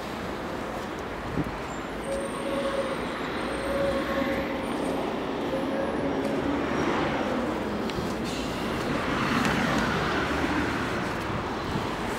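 Steady outdoor road-traffic noise that swells in the second half as a vehicle passes, with a single light click just over a second in.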